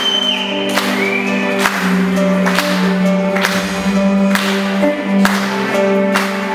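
Music on a nylon-string classical guitar, with sharp strokes about once a second over held low notes.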